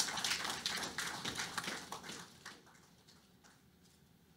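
Scattered audience applause, many irregular claps that thin out and die away about two and a half seconds in.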